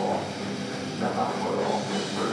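Heavy metal band playing live through a PA: distorted electric guitars over bass and drums, a dense, continuous wall of sound.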